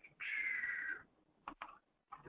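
A short breathy vocal sound that drops slightly in pitch, then two quick computer-mouse clicks about a second and a half in.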